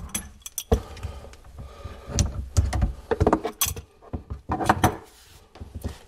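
Steel adjustable wrenches clinking and clunking against the pipe fittings and the cabinet floor as they come off the supply-line nut and are set down: a string of sharp metallic clicks and knocks.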